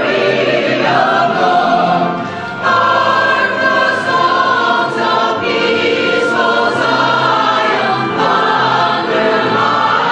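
A mixed church choir singing in full voice, with a short drop in loudness a little after two seconds in.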